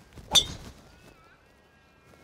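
A driver striking a golf ball off the tee: a brief swish of the downswing, then a single sharp crack of impact about a third of a second in.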